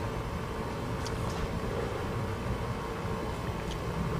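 Steady low background rumble, with a few faint ticks.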